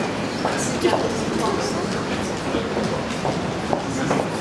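A luggage trolley carrying a plastic dog transport crate rolling over a tiled floor, with a steady clatter and many small knocks from the wheels and the rattling crate. People are talking in the background.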